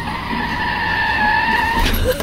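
Car tyres screeching in one steady high squeal over a low rumble, cutting off abruptly shortly before the end.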